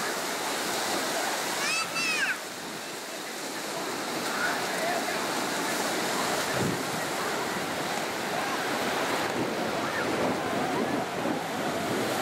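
Steady noise of sea surf and breaking waves, with a high-pitched shout about two seconds in and faint voices of bathers.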